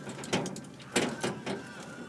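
Horse tack being lifted off metal wall hooks: a few sharp knocks and rattles of straps and hardware, about four in the space of a little over a second.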